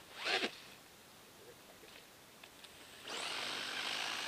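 Electric radio-controlled buggies driven hard in snow: a brief burst of motor whine and wheels spinning through snow near the start, then from about three seconds in a second, longer run of whining motor and tyres churning snow close by.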